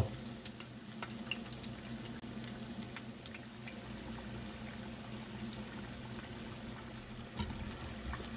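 Cassava-and-taro cakes deep-frying in hot oil in a stainless steel pan: a faint, steady sizzle and bubbling with scattered small pops. A brief metal clink near the end as tongs go into the pan.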